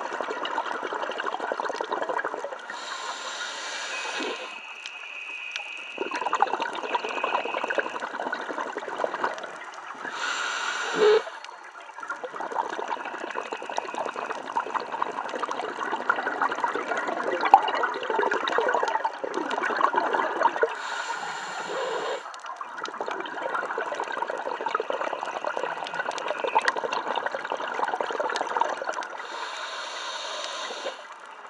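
Scuba diver breathing through a regulator, heard underwater: long crackling, gurgling streams of exhaust bubbles, broken four times by a short hissing inhalation during which the bubbling stops.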